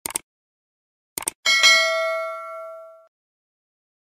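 Two quick clicks, then another pair of clicks about a second later, followed by a bright bell ding that rings out for about a second and a half. This is the stock sound effect of a subscribe-button and notification-bell animation.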